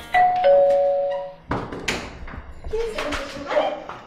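Two-note doorbell chime, a higher note followed by a lower one, each ringing for about a second before fading, followed by a few sharp clicks.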